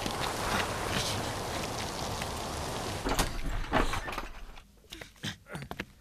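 Scuffling and footsteps of people struggling through snow over a steady rushing noise, with a sharp thump a little after three seconds in. A few quieter knocks and steps follow.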